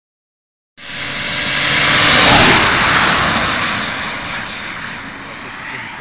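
Two cars running flat out in a drag race, their engines loud as they pass close by. The sound cuts in just under a second in, is loudest a little after two seconds, then fades away down the strip.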